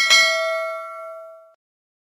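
Notification-bell sound effect: a short click, then a single bright ding that rings out and fades away within about a second and a half.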